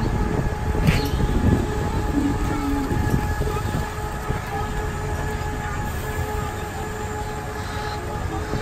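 Monorail train running along its elevated single rail: a steady low rumble with a constant hum, and a sharp click about a second in.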